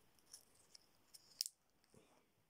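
Plastic clip-on ferrite core being fitted onto a mains cable. A few faint clicks and rubbing sounds, then one sharper click about one and a half seconds in as the clamp is snapped shut.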